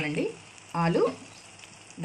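Onion-tomato masala with raw potato chunks frying in a pan: a faint, steady sizzle. A voice says the word "aloo" just before a second in, louder than the sizzle.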